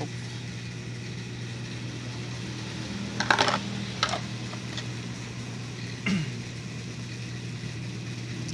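A steady low hum with a short clatter of handled metal parts about three seconds in, a single knock a second later and a brief scrape near six seconds.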